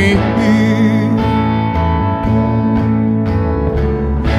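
Live band playing an instrumental passage: guitar chords over a bass line with a steady, slow pulse, no voice.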